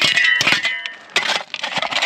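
A short guitar phrase sounds during the first second, over a shovel scraping and chopping into rocky, gravelly soil in several gritty strokes, with loose dirt and stones falling.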